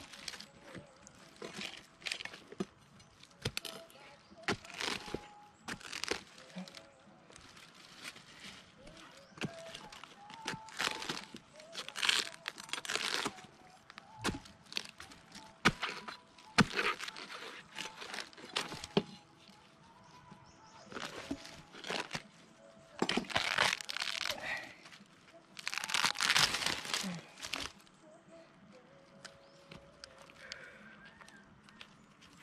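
Fibrous pith of a felled fan-palm trunk being torn and pried apart by hand and hacked with a machete: irregular cracking, tearing and crunching strokes, with louder bursts now and then.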